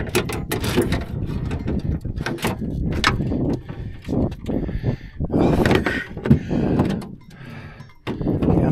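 Close handling noise: cloth rubbing on the microphone with irregular knocks and clunks, louder for a stretch a bit past the middle and dropping away near the end.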